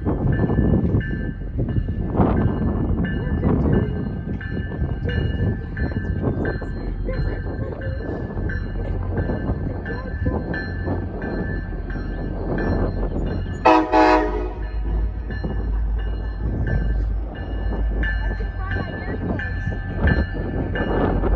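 Diesel locomotive approaching, its engine rumble growing louder over the second half, with one short horn blast about fourteen seconds in.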